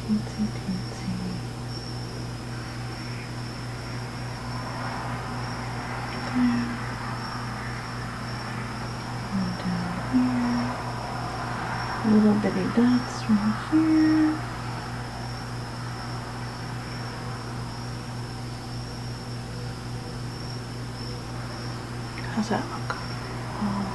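A woman humming a few short, low notes to herself, loudest and most frequent about twelve to fourteen seconds in. Under it run a steady low hum and a constant high-pitched whine.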